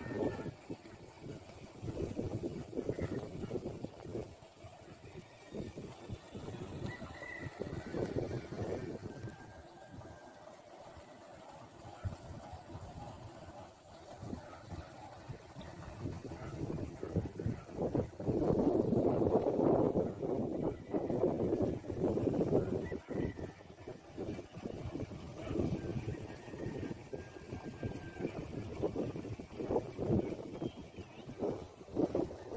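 Wind buffeting the microphone: an irregular rushing noise that swells and fades in gusts, strongest about two-thirds of the way through.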